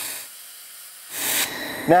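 Handheld IPG laser welder with wire feed sizzling on steel plate at the end of a fillet weld. The hiss fades soon after the start, and a louder hiss rises about a second in.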